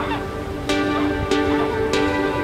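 Domestic geese honking now and then over background music with sustained notes and a steady beat.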